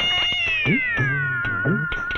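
A long, drawn-out cat meow that slides slowly down in pitch, set over a music track with a repeating low beat.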